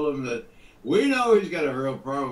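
Speech: a man talking, with a short pause about half a second in.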